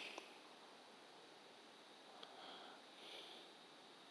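Near silence, with a few faint breaths close to the microphone.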